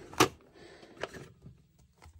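Plastic side latches of an Elizabeth Ward bead storage container snapping open with one sharp click, then a softer tick and faint handling as the plastic lid is lifted.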